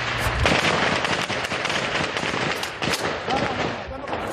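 Gunfire: dense, irregular cracks of automatic weapons fire that start suddenly and run on, with a man's voice calling out briefly near the end.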